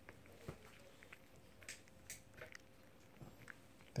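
A cat eating pieces of chicken from a hand, with faint, irregular small clicks of chewing and licking.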